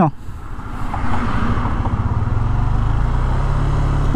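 Yamaha NMAX 155 single-cylinder scooter engine revving up about a second in as the throttle is opened gently from low speed, then holding steady while the CVT clutch engages. The pull-away is smooth with no clutch drag or judder, which the rider credits to the new Speedtuner CVT set.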